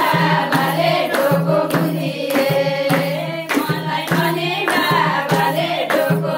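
Women singing a Teej folk song together, accompanied by a steady beat on a madal hand drum, with hand clapping along.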